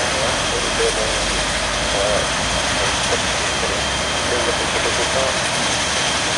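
ATR-72 turboprop engine running steadily on the ground: a constant rushing noise with a thin high whine over it, no change in pitch or level.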